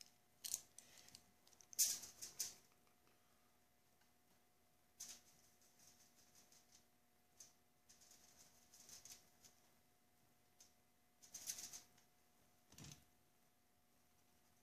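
Faint, scratchy strokes of a paintbrush working thick oil paint, coming off and on in short bursts, the loudest about two seconds in and near the end.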